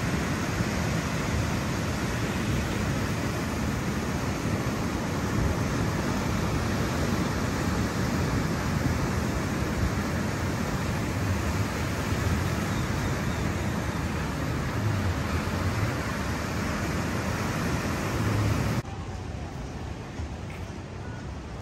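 Ocean surf breaking on a beach, a steady rush of noise with wind buffeting the microphone. Near the end it drops suddenly to a quieter outdoor background.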